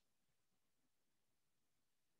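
Near silence: faint, steady background hiss.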